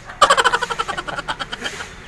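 A man laughing: a burst of quick, repeated laughs a moment in, which fades out over about a second and a half.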